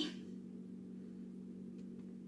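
Quiet room with a steady low hum and no distinct event; the hand-shaping of the dough makes no clearly audible sound.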